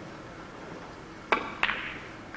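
Three-cushion carom billiards shot: two sharp clacks about a third of a second apart, as the cue strikes the cue ball and the balls collide. The second clack rings briefly.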